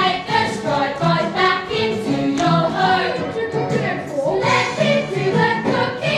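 A group of young voices singing a musical-theatre number together over instrumental accompaniment with a steady beat.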